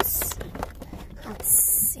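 Rustling handling noise as packaging and clothing are worked close to the phone: a short hiss at the start, then a louder, longer rustle about one and a half seconds in.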